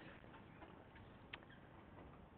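Near silence: faint room tone, with a single soft click about a second and a half in.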